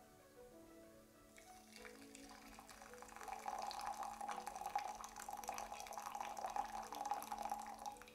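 Boiling water poured from an electric kettle in a thin stream into a small glass beaker, a faint steady trickle that starts about a second and a half in.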